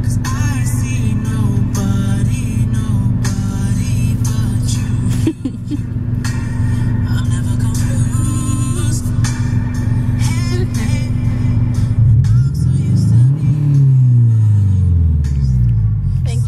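Music playing loudly on a car stereo, heard inside the car cabin over a steady low hum. Several deep falling tones come in near the end.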